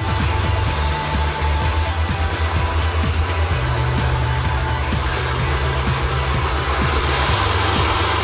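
Background electronic music with a bass line and beat, over the steady rush of a handheld hair dryer blowing.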